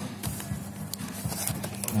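Gift wrapping paper rustling and crackling in short quick crinkles as a present is unwrapped, with music playing underneath.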